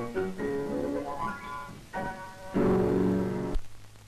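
Grand piano played with mittened hands: quick runs of notes, then a loud final chord held for about a second that stops abruptly.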